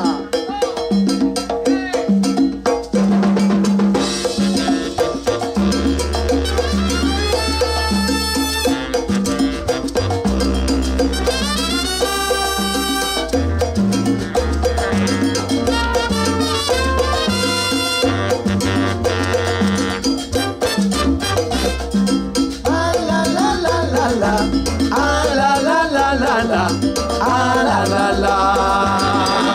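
Live salsa band playing an instrumental passage: steady Latin percussion with bass and melodic lines, no singing. The bass line comes in about five seconds in.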